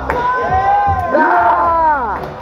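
Crowd cheering and shouting in reaction to a breakdancer's move, over the battle's music.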